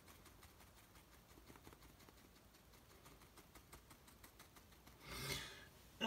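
Faint scratchy dabbing of a worn, spiky bristle brush on watercolour paper, a run of light ticks as the foliage is stippled in. About five seconds in there is a short, louder rush of noise.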